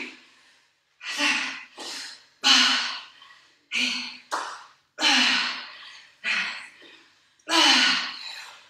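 A woman breathing hard from exertion: short, heavy breaths out about once a second, some with a slight voiced grunt.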